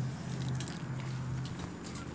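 Footsteps on outdoor paving, with a steady low hum underneath.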